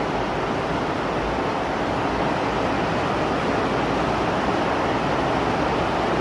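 Steady, loud rush of water from a torrential downpour that is flooding the greenhouse.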